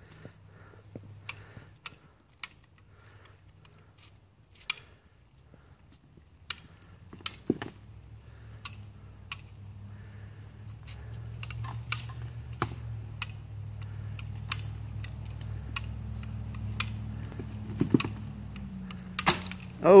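Scattered sharp clicks and knocks over a low steady hum that grows louder from about halfway. Near the end comes a loud sudden sound as a pulling strap slips.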